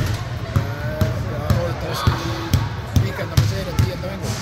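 Basketballs bouncing on a court floor, sharp thuds about twice a second at an uneven pace, under a man's voice.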